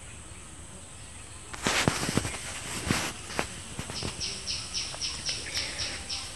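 A metal spoon scraping and knocking against an aluminium karahi while frying onion and spices are stirred, with a few sharp clatters from about a second and a half in. In the second half, a bird chirps in a quick, even run of high notes, about four a second.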